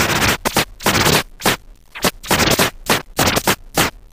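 Vinyl record scratched by hand on a Technics SL-1200MK2 turntable through a Vestax PMC-06 Pro D mixer: quick back-and-forth strokes in short clusters, cut by brief gaps.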